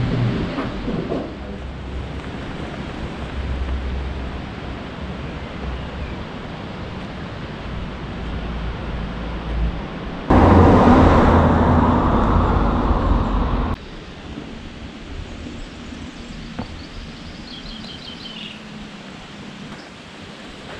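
Outdoor ambient noise with a low, steady rumble of the kind road traffic and wind make. About halfway through, a louder rushing noise lasts some three seconds and cuts off sharply. The ambience after it is quieter, with a few short high chirps near the end.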